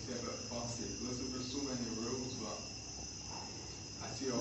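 Crickets chirring in a steady high drone, with a voice speaking quietly underneath.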